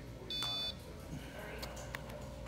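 A single short, high electronic beep from a Nellcor pulse oximeter, about a third of a second in, over a faint steady hum.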